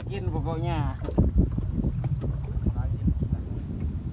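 Steady low rumble of a small boat running on choppy water, with wind buffeting the microphone in irregular low thumps. A voice calls out briefly in the first second.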